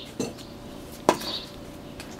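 Two sharp metallic clinks about a second apart, the second louder with a short ring, like a hard object striking metal.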